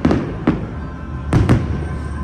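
Firework shells bursting overhead: four sharp bangs, the last two close together, over the show's music.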